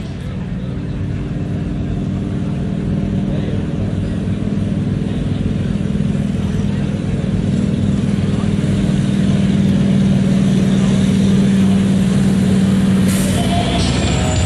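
Pickup truck engine running steady and hard under load as it pulls a weight-transfer sled, its low note holding an even pitch and growing gradually louder.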